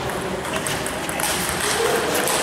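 Table tennis ball clicking sharply off the bats and the table several times during a rally, over a murmur of voices in a large hall.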